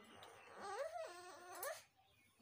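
A woman's whimpering, wailing cry that wavers up and down in pitch, ending in a short rising squeal near the end.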